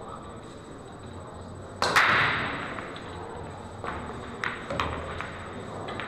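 Pool break shot: a loud crack as the cue ball smashes into the racked balls about two seconds in, with a brief clatter as the rack scatters. Several lighter clicks follow as the balls knock into each other and the cushions.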